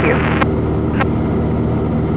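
Cessna 182 piston engine and propeller droning steadily in cruise, heard from inside the cabin. Two short clicks come about half a second and a second in.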